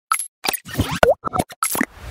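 A quick string of short cartoon pop and plop sound effects from an animated logo intro, about eight in two seconds, one with a bending, boing-like pitch about a second in.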